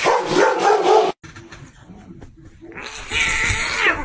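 A German shepherd's loud vocal outburst lasting about a second that cuts off abruptly. After that the sound is low, and a noisy rustle rises near the end.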